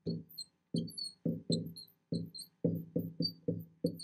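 Marker writing on a glass lightboard: a quick run of short squeaky strokes, about four a second, each stopping sharply between letters.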